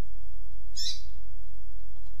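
Double-collared seedeater (coleiro) giving one short, high, sharp note of its 'tui-tuipia' song type, a little under a second in. A steady low hum runs underneath.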